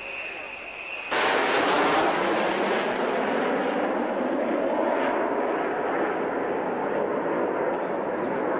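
Jet engine noise from a B-2 Spirit stealth bomber's four turbofans as it passes low overhead: a loud, steady rushing noise that cuts in suddenly about a second in, its hiss easing slightly after a few seconds. Before that there is a quieter, steady sound with a thin high whine.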